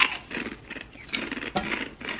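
Crunchy hummus chips being chewed, with irregular crackles and a sharp crunch at the start, along with the crinkle of the paper crisp packet being handled.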